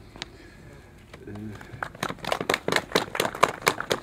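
A small group of people clapping, sparse and irregular, beginning about halfway through.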